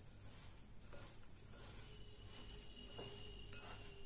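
Faint rustling of dry roasted seeds and chopped betel nut being stirred by hand in a glass bowl, with light clinks against the glass.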